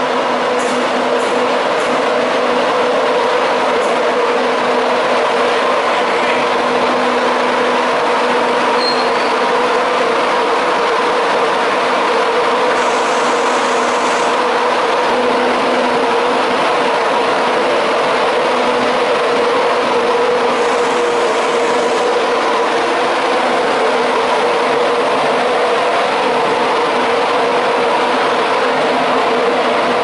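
Electric intercity passenger trains running along the station platforms: a steady, loud rolling noise of wheels on rail with a steady hum beneath it.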